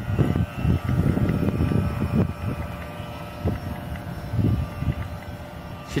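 Electric motor and propeller of a radio-controlled scale boat running out on the water, heard as a faint steady whine, under irregular low gusts of wind on the microphone.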